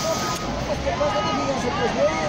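Bystanders' voices, talking in the background over a steady outdoor noise.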